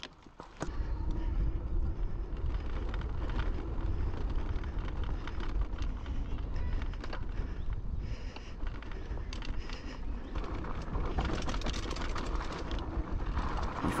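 Fat-tyre e-bike ridden over a sandy dirt trail, heard from the bike: a steady low rumble of riding noise with frequent rattling clicks. The rattle on this bike comes mostly from the chain hitting the frame, which has no chainstay protector or clutch derailleur. The riding noise starts about half a second in.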